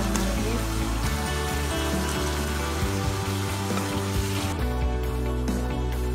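Stir-fried chicken and vegetables sizzling in a frying pan as soaked rice vermicelli is added on top, under background music. The sizzle drops away about four and a half seconds in, leaving the music.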